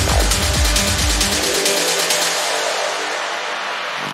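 Dark techno in a DJ mix: the kick-drum beat, about two kicks a second, drops out about a second and a half in. It leaves a sustained noise wash over the track, a build into a breakdown.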